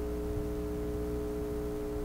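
A steady electrical hum: a low buzz held at several fixed pitches, unchanging, in a pause in the recording between two radio jingles.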